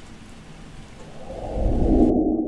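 Steady rain hiss, then a low rumble of thunder that builds from about halfway and peaks near the end.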